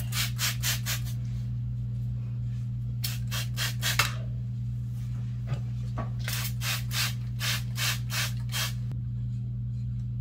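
Hand-pumped trigger spray bottle misting hair in quick squirts, several a second. It comes in three runs: about seven squirts at the start, about five around the middle, and about a dozen near the end.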